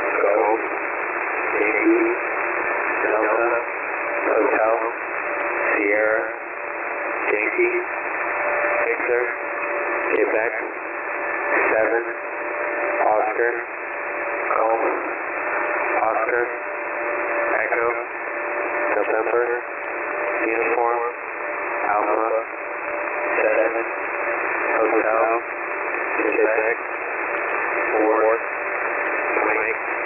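A voice over HF single-sideband radio reading out an Emergency Action Message one character at a time in the phonetic alphabet, about one every second and a half. The voice comes through hiss and static with a thin, telephone-like sound and a faint steady whistle underneath.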